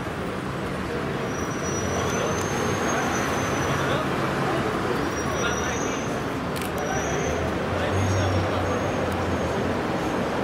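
Street traffic noise: a steady wash of vehicle engines with a low engine hum that swells about two seconds in and again near the end, under indistinct voices.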